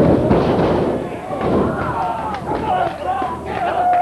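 Two heavy thuds of wrestlers' bodies landing on the ring, one right at the start and another about a second and a half in, under shouting voices from the crowd.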